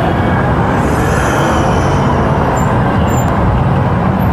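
Steady, loud road traffic: cars and vans running past in dense city traffic.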